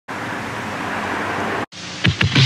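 A steady hiss that cuts off suddenly about a second and a half in, followed by a quieter hiss.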